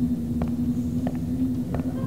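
A steady low hum, with a soft tick about every two-thirds of a second laid over it.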